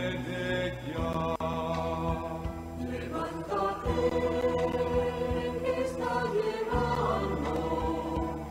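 Spanish-language Advent hymn with choir-like voices and instrumental accompaniment, sung in long held notes.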